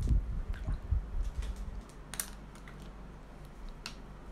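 Scattered light clicks and taps, with low knocks in the first two seconds, then only a few faint clicks.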